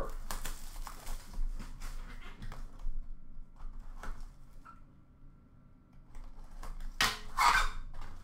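A shrink-wrapped cardboard trading-card box being cut and opened by hand: crinkling, scraping and small clicks, quieter in the middle, then a loud rustle about seven seconds in as the lid comes open.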